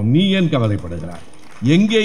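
Speech only: a man speaking Tamil into a microphone, with a short pause in the middle.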